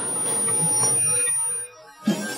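A post-production sound effect: a steady, high-pitched ringing tone over a soft haze that swells slowly, then cuts off suddenly about one and a half seconds in.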